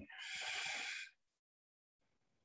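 A person's breath between spoken affirmations: a soft hiss lasting about a second.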